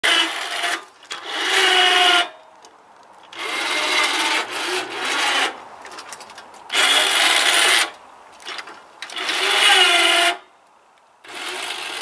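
Electric winch motors of a homemade powered exoskeleton whirring in six bursts of about one to two seconds each, as they drive the legs one step at a time.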